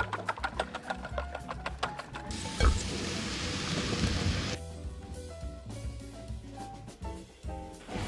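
A whisk clicking rapidly against a stainless steel bowl as eggs and cream are beaten. About two seconds in, sliced button mushrooms sizzle in a hot steel frying pan for about two seconds, then stop abruptly. Light background music runs throughout and is heard on its own for the last few seconds.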